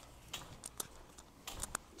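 Faint scattered clicks and taps, about half a dozen short ones, over quiet room tone.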